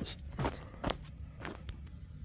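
Footsteps on loose rock and dry dirt, three or four steps about half a second apart, as someone walks down into a dry pit.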